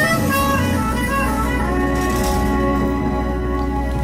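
Live jazz band with a trumpet holding out a long closing chord over a sustained bass note as the song ends.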